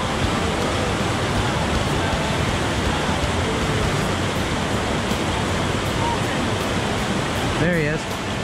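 Small mountain stream pouring over a little rock cascade into a pool, a steady close rush of water.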